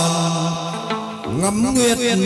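Chầu văn ritual singing with instrumental accompaniment: a long held sung note fades out about a second in, then a new note slides upward.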